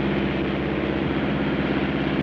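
Steady drone of an aircraft's engines heard from inside the cockpit: a low hum of steady tones under an even rush of noise.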